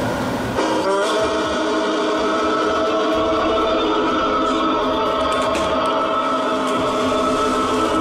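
A steady drone of many held tones that starts about half a second in and holds unchanged.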